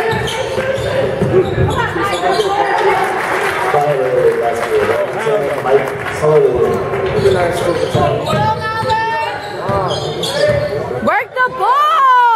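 Basketball game in a gym: the ball bouncing on the hardwood court amid echoing crowd chatter and voices. Near the end come short rising-and-falling sneaker squeaks on the floor.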